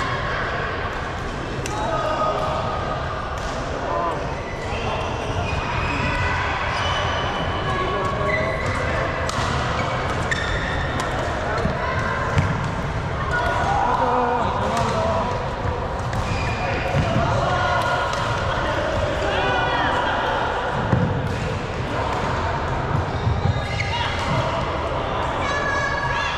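Badminton doubles rally in a large hall: sharp strikes of rackets on the shuttlecock and footfalls on the court floor, over voices in the hall.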